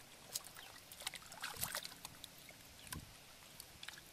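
Hands moving through shallow muddy water among grass, making small irregular splashes and sloshes, with a little flurry of them about one and a half seconds in and another near three seconds.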